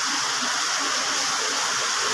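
Heavy monsoon rain falling outside, a steady hiss of downpour heard from inside a shop.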